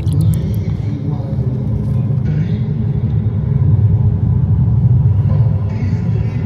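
A deep, steady rumble from the sound system of an immersive projection exhibition room.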